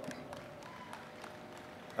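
Faint scattered applause from an audience in a large hall, a light patter of many claps.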